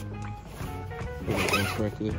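Cloth rustling as a costume's pant leg is slid down over the metal support pole of a life-size animatronic prop, with a short voiced sound from about halfway in.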